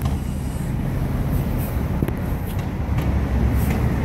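City street traffic: a steady low rumble of passing cars and buses, with a few faint clicks.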